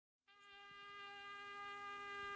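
A faint, steady buzzing drone tone fades in and slowly swells, holding one pitch with many overtones.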